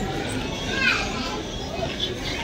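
Background voices of people in a hotel corridor, with a child's high-pitched voice rising and falling about a second in.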